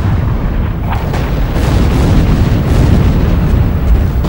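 Naval artillery bombardment: a continuous heavy rumble of battleship guns firing and shells exploding, with several sharper blasts standing out along the way.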